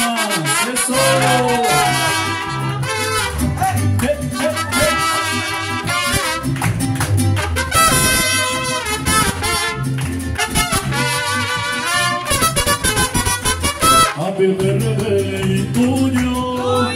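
Mariachi band playing an instrumental passage: trumpets and violins carry the melody over a steady plucked bass pulse from the guitarrón.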